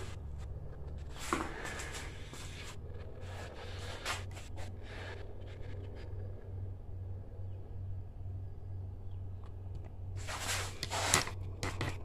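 Faint rustling and scraping handling noises over a low, steady, evenly pulsing hum, with a louder cluster of rustles about ten seconds in.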